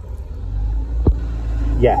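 Plastic wiring plug being pulled off a car rear lamp cluster's bulb holder, with one sharp click about a second in as it comes free, over a low steady rumble.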